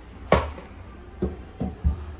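Plastic toy blender jug knocked down onto a wooden tabletop: one sharp knock, then three lighter knocks as it is moved about.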